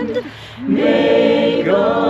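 Small choir singing a cappella, with a short break for breath about a quarter of a second in before the voices come back in together on the next phrase.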